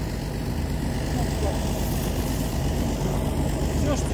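A vehicle engine running steadily at idle: an even, low, pulsing rumble.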